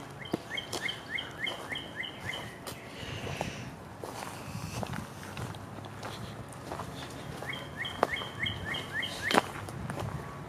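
A songbird singing a fast series of repeated chirping notes, about four a second for two seconds, twice: once near the start and again near the end. Scattered footstep-like clicks and rustles sound underneath, the sharpest near the end.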